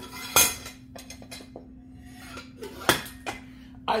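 Metal clinks and clanks from an aluminium transom wheel bracket and its pin as the wheel is handled, with two sharper clanks about half a second in and near three seconds in.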